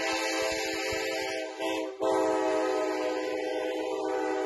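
A sustained chord of several steady tones, held unchanged apart from a brief break about two seconds in.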